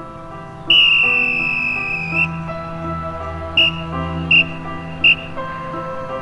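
A drum major's whistle: one long blast, falling slightly in pitch, then three short blasts about three-quarters of a second apart. Underneath, slow music with held chords plays from a loudspeaker.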